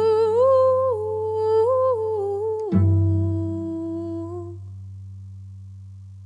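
A woman humming a slow wordless melody over a deep cello note. The cello note is sounded again near three seconds in and is left to ring and fade after the humming stops, about halfway through, ending the song.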